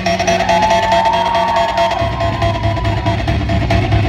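Live rock music played on electric guitar through a club PA, with a long high note held for most of the first three seconds over a steady low bass.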